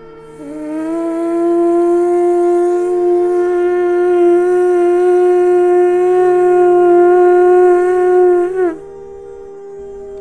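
A conch shell blown in one long, steady note. It comes in about half a second in, holds for about eight seconds and drops in pitch as it cuts off near the end, over a soft background music drone.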